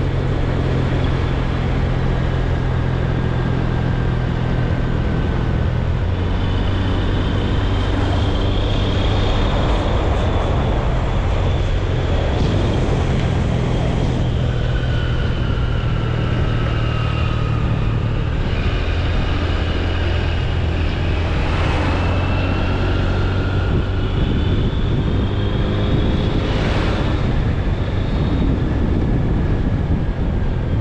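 A vehicle driving along a road: a steady low engine drone with road noise, and faint whines that slowly rise and fall in pitch as speed changes.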